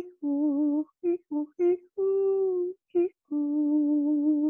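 A man's solo voice singing a wordless, hummed melody of a healing song, with no instrument. It goes as a held note with vibrato, three short notes, a longer held note that sinks slightly, one short note, and a long wavering note near the end. The sound cuts to silence between phrases.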